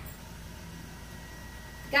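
Quiet room tone: a low steady hum with no distinct sounds.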